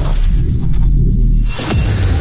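Intro sting music: a deep, loud bass rumble that thins out above, then a sharp hit about one and a half seconds in, landing as the logo appears.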